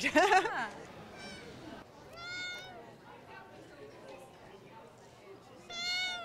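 A cat meowing twice, about two seconds in and again near the end, each call rising and then falling in pitch.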